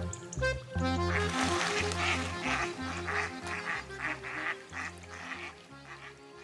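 Ducks quacking in a quick run of rough calls, starting about a second in and fading toward the end, over background music.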